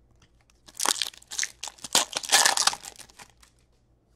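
A foil trading-card pack wrapper crinkling as the cards are handled and pulled from it, in a run of rustling, crackling bursts lasting about two and a half seconds.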